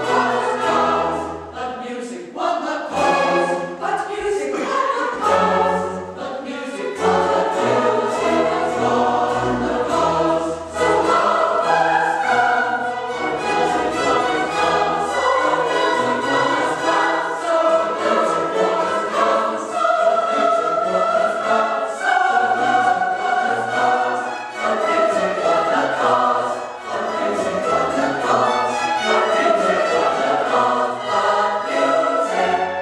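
Mixed choir singing a classical choral work, accompanied by a small string orchestra with cellos and violins.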